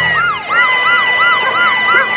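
A cartoon siren sounding in quick rising-and-falling whoops, about three a second, over a steady high tone, playing from a fire scene on a television.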